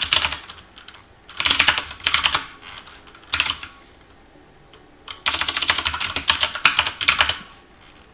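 Computer keyboard typing in several short bursts of keystrokes with pauses between, the longest and fastest run near the end.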